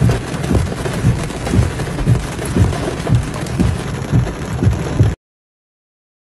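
Heavy rain pouring down, a dense steady hiss with low thumps about twice a second underneath. It cuts off abruptly about five seconds in.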